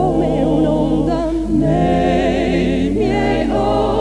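A vocal trio, two men and a woman, singing a slow Italian ballad in close harmony with vibrato over a soft sustained low accompaniment.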